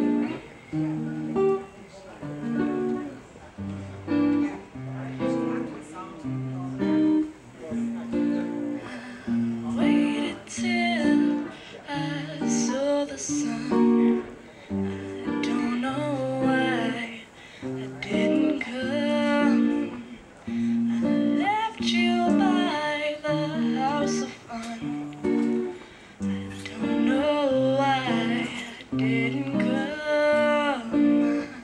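Acoustic guitar playing a repeating chord pattern as a song's introduction, with a voice singing over it from about ten seconds in.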